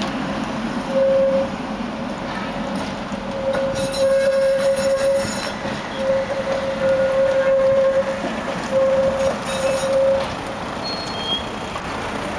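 Articulated tram's steel wheels squealing as it takes a tight curve: a steady high squeal that comes and goes in four stretches, the longest about two seconds, over the rumble of the moving tram.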